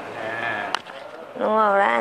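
A woman speaking Thai in a drawn-out, wavering voice, with a short sharp click about three quarters of a second in.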